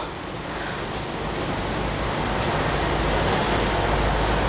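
Outdoor background noise: a steady rushing sound with a low rumble that slowly grows louder, and a few faint high chirps about a second in.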